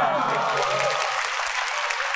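Studio audience applauding, with voices over the clapping in the first second.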